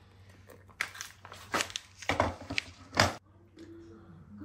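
Hot water poured from a stainless-steel kettle into a ceramic mug over a green tea bag, followed by about six short, sharp crinkling and knocking noises as the tea bag and kettle are handled, the loudest about three seconds in.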